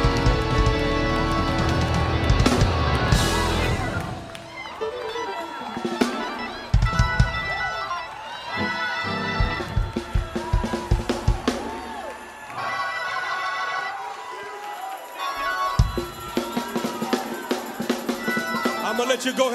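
Live gospel worship music. A full band with bass and drums plays for about the first four seconds, then thins to a sparser passage where a voice glides and ad-libs over scattered drum hits.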